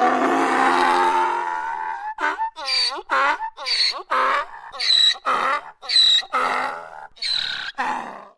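Donkey braying: one long, drawn-out rasping call, then a run of quick hee-haw cycles about two a second that trail off near the end.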